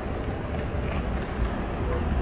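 Steady low rumble of street noise, with a few faint ticks over it.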